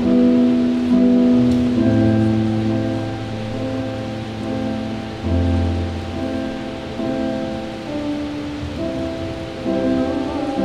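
Electric keyboard playing slow, sustained piano chords that change every second or two, the opening of a pop-song duet.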